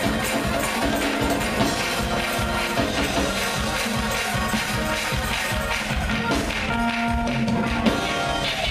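Fast gospel praise-break music from a church band: a driving beat with held chords underneath.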